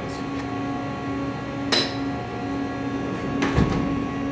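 Sliding enclosure doors of a Haas VF-2SS CNC mill being shut, a noisy thud near the end, after a single sharp click about two seconds in. Under it runs a steady hum with a few held tones.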